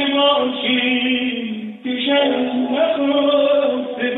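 A man's voice sings a Persian tasnif in long, held, ornamented notes, with a tar accompanying. There is a brief break just before the midpoint. The recording is a phone recording with a thin, band-limited sound.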